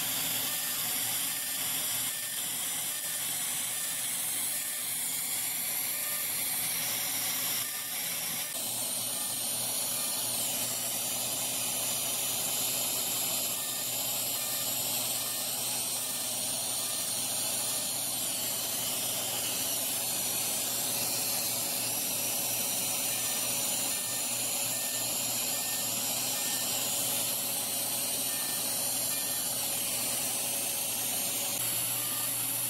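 Steady hiss and hum of a running Lumenis UltraPulse fractional CO2 laser and its treatment-room equipment during a resurfacing pass, with faint short beeps repeating at even intervals.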